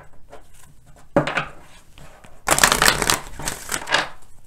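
Tarot deck being shuffled by hand: a short burst of cards about a second in, then a dense run of rapid card flicks lasting over a second near the end.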